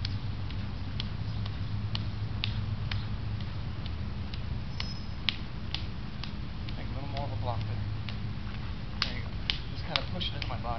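Sharp slaps of hands and forearms meeting as two people trade blocks and strikes in a martial arts partner drill, irregular at about one or two a second, with a few louder ones in the second half, over a steady low rumble.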